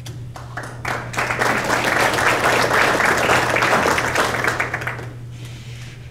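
Audience applause in a hall. A few scattered claps build about a second in into steady clapping, which fades out around five seconds in.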